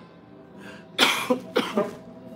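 A woman with flu coughs once about a second in: a sharp, harsh burst followed by a short voiced tail. Soft background music plays underneath.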